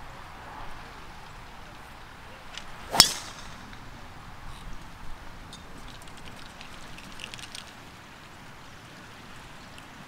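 A driver striking a golf ball off the tee: one sharp crack about three seconds in, over a quiet outdoor background.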